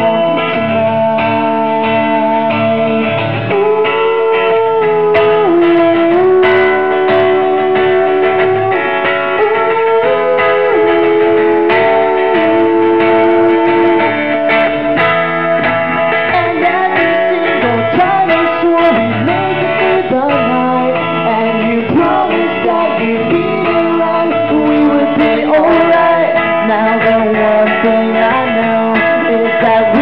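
Live acoustic band music: an acoustic guitar played under a man singing.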